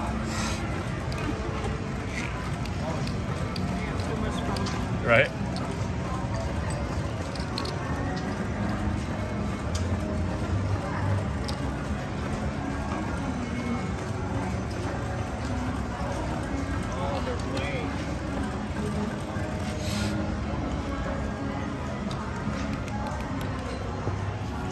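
Casino floor ambience: a steady murmur of distant voices with background music. One brief, sharp, loud sound comes about five seconds in.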